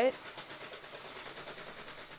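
LEGO electric motors driving the excavator's plastic crawler tracks, a fast, even clatter of about a dozen clicks a second that stops right at the end.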